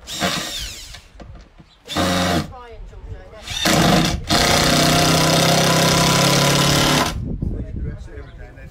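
Cordless drill running into the timber rafters overhead in four bursts: the first winds up in pitch, two short ones follow, and the last and longest holds a steady pitch for about three seconds.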